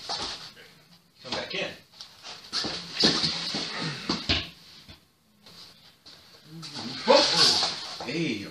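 Two men grappling in a knife-defence drill: short wordless grunts, gasps and whimper-like vocal noises come in broken bursts with scuffling between them. The sound drops almost to nothing about five seconds in, and the loudest vocal burst comes near the end.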